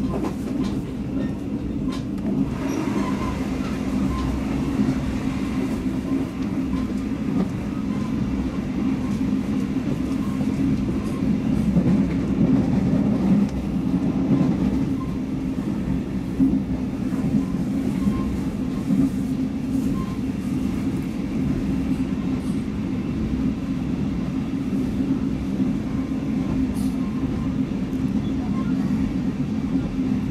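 Steady running noise of a moving sleeper train heard from inside the carriage: a continuous low rumble of wheels on rails.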